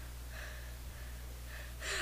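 A steady low hum with a few soft breaths, ending in a quick intake of breath.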